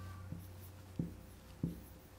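Dry-erase marker writing on a whiteboard, the tip meeting the board in three short, soft knocks about two-thirds of a second apart as the letters are drawn.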